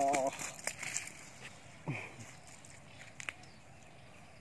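A man's laughter, ending in the first moment, then quiet open-air background with a few light taps and rustles and one short falling vocal sound about two seconds in.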